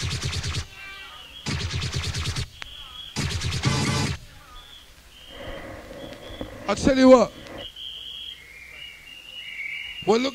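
Rave music chopped into three short bursts, then dropping away to a break in which crowd whistles blow short, steady high notes over crowd noise, with a brief shout about seven seconds in.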